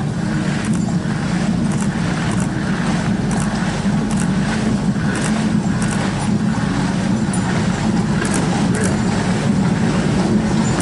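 Outdoor ambience of a marching procession recorded on a handheld camera: a steady low rumble with faint, scattered high ticks.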